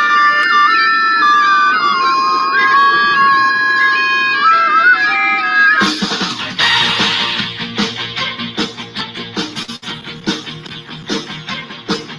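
A home-built one-man woodwind bagpipe contraption playing a stepwise tune, with several reedy notes sounding at once. About six seconds in it cuts off abruptly, and different music with a quick plucked-string rhythm follows.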